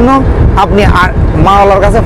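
A man talking, over a steady low rumble from the river launch's engine and wind on the microphone.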